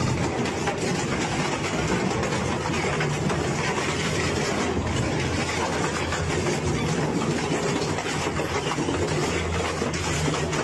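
Twin-shaft shredder's toothed cutter discs crushing and tearing a painted sheet-steel object with a tubular frame. A continuous grinding crunch of bending, tearing metal runs over the steady hum of the drive, with scattered sharp cracks.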